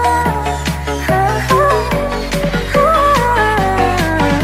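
Vietnamese electronic dance remix music: a lead melody that slides between notes over held bass notes and a steady beat.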